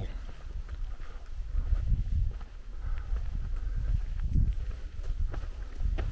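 Footsteps on a dirt trail and the heavy breathing of a hiker puffing on an uphill climb, over a steady low rumble.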